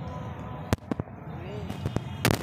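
Two sharp clicks about a quarter second apart, two-thirds of a second in, over a steady outdoor background, with a few fainter clicks near the end.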